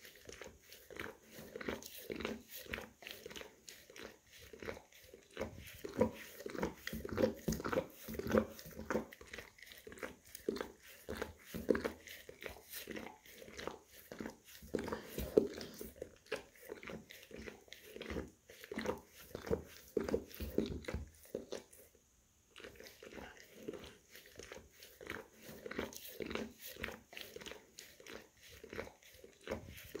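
An English cream golden retriever licking and grooming its paw: a rapid, uneven run of licks, several a second, with a brief pause about two-thirds of the way through.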